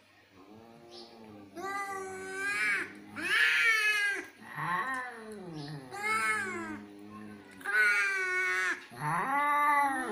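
Domestic cats yowling in an aggressive standoff: about six long, wavering wails that rise and fall in pitch, one after another. These are threat calls, the warning before a cat fight.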